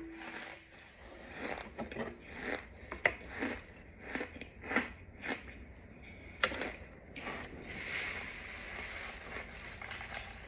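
A clear plastic jar handled over a paper-lined metal tray: a run of light taps and scrapes, about two a second, with a few sharper knocks as the jar is set down on the tray, then a faint steady hiss.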